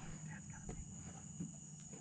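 Faint steady high-pitched trill of evening insects, with a couple of soft knocks.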